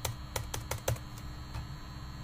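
Laptop keyboard typing: about five quick keystrokes in the first second, then one faint tap a little later.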